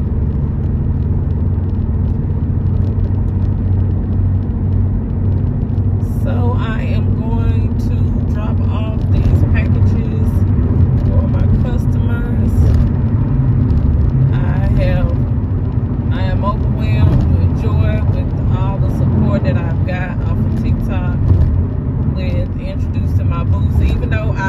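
Steady low rumble of road and engine noise inside a car cabin at highway speed. From about six seconds in, a person's voice talks over it on and off.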